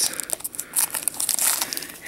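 Foil wrapper of a Pokémon trading card booster pack being torn open and crinkled by hand, an irregular run of crackling rustles.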